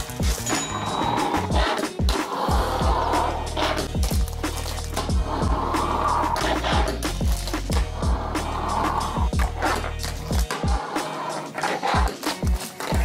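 A fingerboard on shark wheels ridden by hand over a stack of wrapped chocolate bars and a wooden tabletop: repeated sharp clacks of the deck and wheels hitting, landing and rolling. Background music with a steady bass runs underneath.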